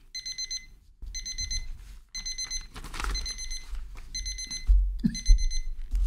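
Electronic alarm beeping, a digital alarm clock or timer: short bursts of rapid high-pitched beeps repeating about once a second. Low thuds come near the end.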